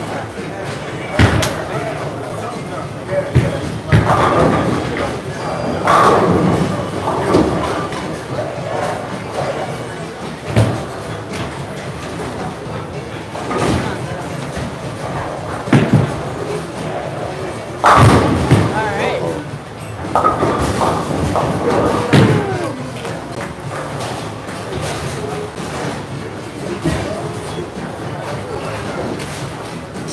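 Bowling alley sounds: bowling balls hitting the lanes and pins crashing, a string of sharp thuds and clatters, the loudest about eighteen seconds in, over people talking.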